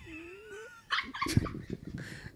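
A woman's high, thin squealing laugh: one rising whine through the first second, then a run of short breathy bursts of laughter.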